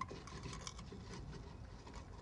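Faint steady hiss of compressed air slowly inflating a high-pressure rescue lifting airbag under a load, with a light knock at the start.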